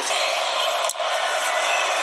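Stadium crowd noise from a football broadcast, a steady wash of many voices with a brief dip about a second in.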